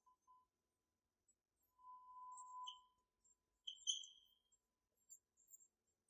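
Faint squeaks of a marker writing on a whiteboard: a thin squeal in the middle and two short high squeaks, otherwise near silence.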